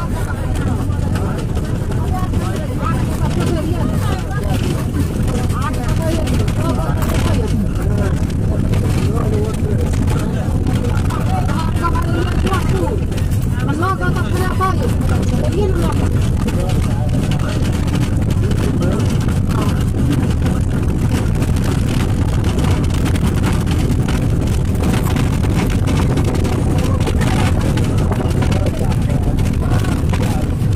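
Bus engine and road rumble heard from inside a moving bus, steady throughout, with a constant hum. People's voices chatter over it.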